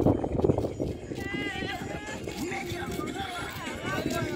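Voices of people talking and calling out, fairly high-pitched, with a low rumble during the first second.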